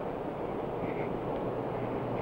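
Steady background noise with a low hum: the room tone of an old 1960s film soundtrack, with a faint short tone about a second in.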